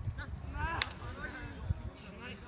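A football struck once with a sharp smack a little under a second in, among players' short shouts, with a fainter thump near the end.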